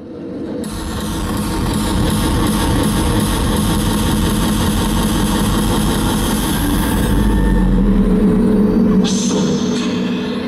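Loud live arena-concert sound: a dense, steady wash with a deep rumble that swells over the first two seconds and then holds. A low held note comes in near the end.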